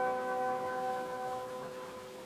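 Piano accordion holding a final sustained chord on an early sound-on-disc recording. The chord fades, its upper notes dropping out about one and a half seconds in while the lowest note lingers, leaving faint disc hiss.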